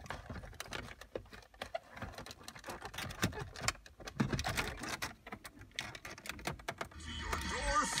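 Small plastic and wood clicks and knocks as the ashtray unit is pushed and plugged into the center console of a 1990 Lexus LS400. Near the end the car stereo comes on and plays louder.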